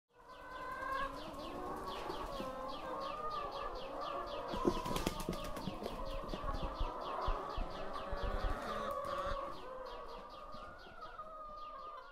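A flock of laying hens calling together, a dense wavering chorus with a rapid run of repeated high chirps, three or four a second. There is some wing flapping about halfway through. The sound fades in at the start and eases off toward the end.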